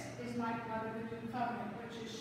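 A woman's voice speaking.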